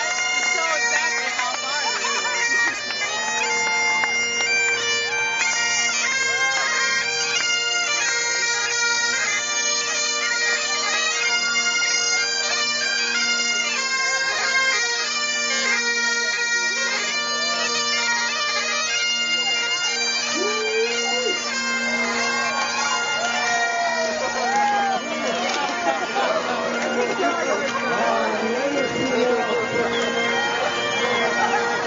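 Bagpipes playing a tune over their steady drones. Onlookers' voices are heard over the piping later on.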